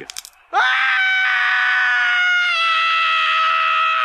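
A cartoon man's long, high-pitched scream of pain, starting about half a second in and held steady while sagging slightly in pitch. It comes from a gymnast landing a dismount on a broken leg.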